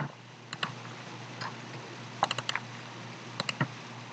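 Scattered clicks of a computer keyboard and mouse, single and in quick clusters of two to four, over a low steady hum.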